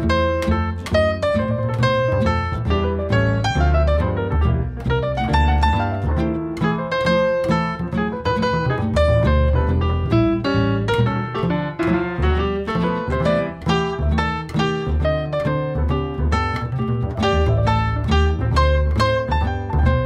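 Instrumental jazz break with plucked guitar over double bass, a busy run of quick notes.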